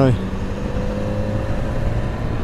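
BMW S1000XR's inline-four engine pulling away gently from a standstill, its note climbing slowly, over a low rumble.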